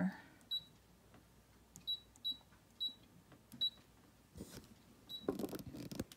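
Brother ScanNCut digital cutter's touchscreen beeping once for each key pressed on its PIN code keypad: six short high beeps, irregularly spaced, with some rustling near the end.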